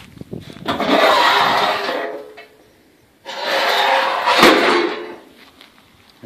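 A hand rubbing across rusted sheet metal on an old wrecked truck: two long scraping strokes, the second with a sharp click partway through.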